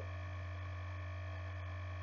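A steady low hum with fainter steady tones above it, unchanging throughout.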